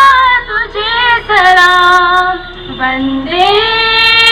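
A high-pitched female voice singing a melody that moves between notes, then settles into a long held note near the end.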